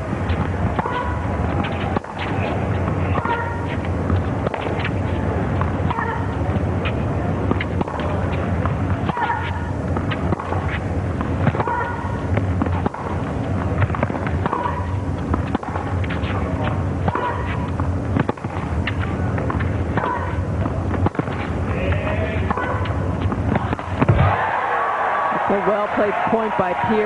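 A long tennis rally: racket-on-ball strikes about once a second or so, many paired with a short grunt from a player, over a steady low hum. About two seconds before the end the rally stops and the crowd breaks into applause.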